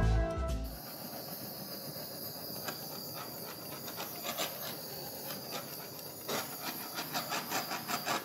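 Small handheld blowtorch running with a steady hiss as it is passed over wet acrylic paint to pop air bubbles, with light clicking in the last two seconds. Background music fades out in the first second.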